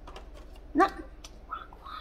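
A dog gives one short, loud yip about a second in, followed by two faint, brief high whimpers.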